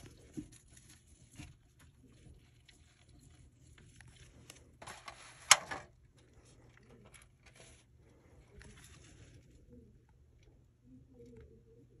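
Soft scratching and rustling with scattered light clicks from bearded dragons moving about in a terrarium, and one sharp click about five and a half seconds in.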